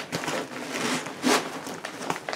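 Crinkling and rustling of a shiny iridescent plastic tote bag as it is pulled open and rummaged through by hand, with a louder rustle a little past halfway.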